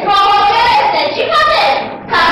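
A child's high voice singing a few drawn-out, slightly wavering notes, breaking off just before the end. The sound is dull and cut off at the top, as on an old VHS tape transfer.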